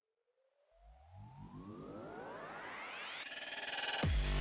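Synthesized rising sweep (a riser effect): a whine climbs steadily in pitch for about three seconds, with lower tones sweeping up beneath it from about a second in, quiet at first and growing louder throughout.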